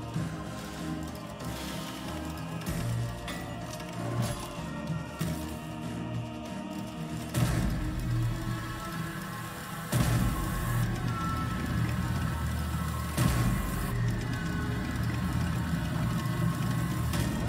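Online video slot game music with a pulsing bass, broken by several sharp hits from the reel spins. The bass comes in heavier about seven seconds in and again at ten seconds.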